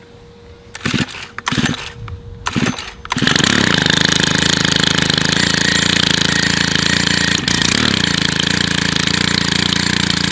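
Stihl KM130 combi-engine on a brush cutter, cold-started with the choke closed: several short tugs of the recoil starter cord, then about three seconds in the engine catches and runs on steadily on choke.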